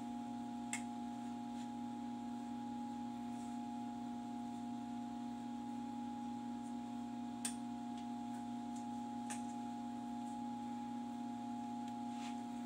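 A steady electrical hum with a few faint clicks and light scraping as hands dig through loose sandy substrate in a plastic tub while searching for eggs.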